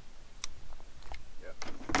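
A single sharp click about half a second in as the shotgun is handled and lowered, followed by a few faint ticks.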